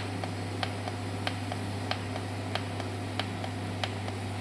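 TIG welding arc from a seam welder's machine torch running along a 3 mm stainless steel seam: a steady low hum with a sharp, regular tick about every two-thirds of a second.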